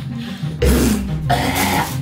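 A man coughing: two loud, rough bursts, a short one about half a second in and a longer one near the end.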